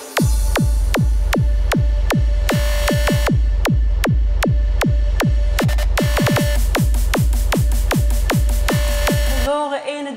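Instrumental drop of an electronic dance track played from a DJ controller: a steady kick drum on every beat over deep bass and a held synth tone, starting suddenly right after the vocal. It breaks off about half a second before the end as the singing comes back in.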